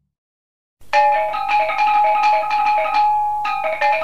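Balinese gamelan playing a bebarongan piece: bright metallophones come in about a second in with rapid repeated ringing strikes, drop out briefly near the three-second mark, then resume.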